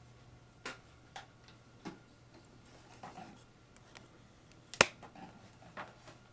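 A few light, scattered clicks and taps from kitchen items being handled while turkey is seasoned in foil pans, with one sharp click a little before the end, over a faint steady hum.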